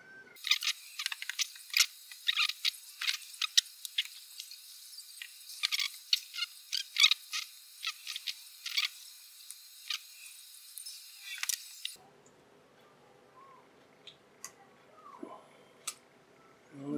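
Rapid, irregular small clicks and taps of iPod case parts and components being handled and prodded on a desk. The sound is thin, with no low end. About twelve seconds in it drops to quiet room tone with a few faint clicks.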